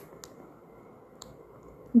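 Stylus tapping on a tablet screen while writing: three light clicks, two close together at the start and one just past a second in, over a low background hiss.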